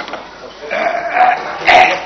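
An old man's throat noises close to the microphone: a voiced sound lasting under a second from about a third of the way in, then a short, sharp, louder one near the end.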